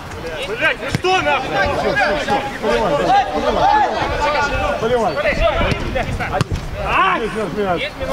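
Players shouting and calling to each other during play, several voices overlapping, with a couple of sharp thuds of the ball being kicked, about a second in and again after six seconds.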